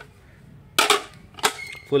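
Two sharp, short clacks about two-thirds of a second apart from handling the shrink-wrapped melamine plates.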